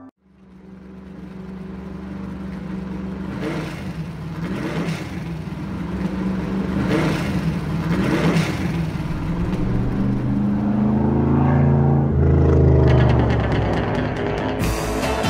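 Car engine rumbling at a steady low pitch and growing louder, with the revs rising and falling in the last few seconds.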